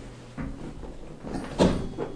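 A single sharp knock about one and a half seconds in, over low background noise.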